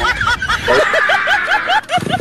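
High-pitched snickering laughter: a rapid string of short rising-and-falling squeals, about five a second.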